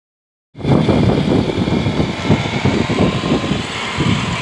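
Tata Sumo Gold's diesel engine running as the SUV drives close past. A loud, rough, low sound that starts suddenly about half a second in and surges unevenly.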